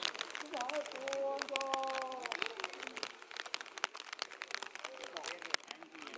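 Faint voices of people talking nearby, over many irregular light crackles and taps close to the microphone.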